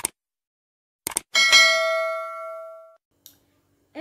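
Subscribe-button sound effect: a mouse click, then two quick clicks about a second in, followed by a single bright notification-bell ding that rings out for about a second and a half.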